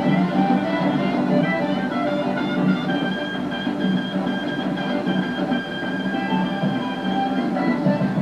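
Old film soundtrack dance music with strings and guitar, playing steadily from a television and picked up off its speaker.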